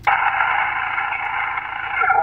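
Steady, narrow hiss from a Yaesu FT-897 transceiver's speaker: 40-metre band noise on lower-sideband receive, starting the moment the microphone is unkeyed.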